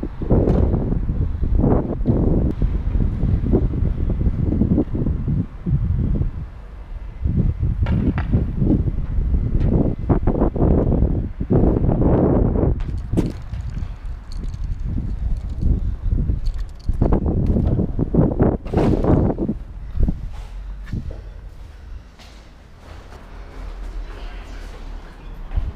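Low, uneven rumble of wind buffeting a body-worn action camera's microphone, with irregular knocks and swells about once a second from walking.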